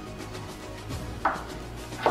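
Kitchen knife chopping cabbage on a wooden cutting board: a run of light, regular cuts with one louder knock a little past halfway, over quiet background music.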